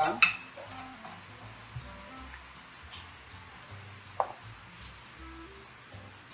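Fish bones going into a pan, with a sharp clatter just after the start and a smaller knock about four seconds in, over soft background music.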